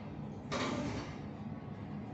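Schindler elevator car travelling upward with a steady low hum. A brief rushing noise starts about half a second in and fades within a second.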